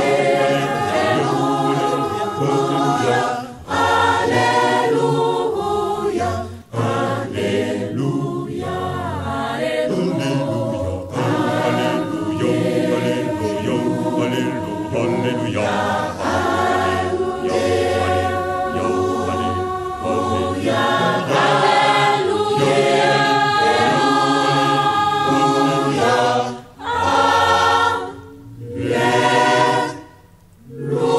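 Choir singing a Kimbanguist gospel song, many voices together. The singing drops out briefly a few times near the end.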